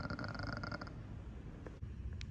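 A man's drawn-out belch with a rapid rattle through it, trailing off about a second in, followed by quiet room noise.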